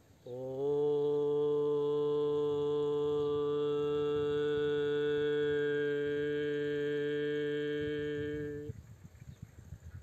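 A man's voice chanting one long, steady vocal tone for about eight seconds, sliding up into pitch at the start and then stopping near the end. It is a yoga toning chant meant to make the body resonate.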